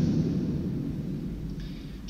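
A pause in the speech: the reverberation of the last spoken word dies away slowly in a large stone church, leaving a low rumbling room tone.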